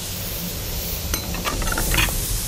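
Chicken strips sizzling in a hot steel wok as a wooden spatula stirs them, with a few light taps and scrapes of the spatula against the pan in the second half.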